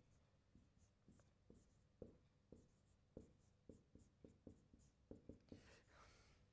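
Marker pen writing on a whiteboard: a faint run of quick, irregular taps and short strokes as letters are written, with a slightly longer stroke near the end.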